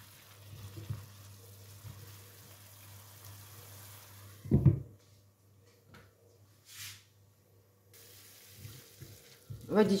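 Cauliflower and onion sizzling quietly in a non-stick pan with the added water almost boiled off, stirred with a spatula. About halfway through comes one loud clatter as the pan is covered with its glass lid, after which it goes much quieter.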